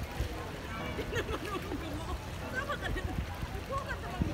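Indistinct chatter of several people talking and calling at a distance, over a low steady rumble.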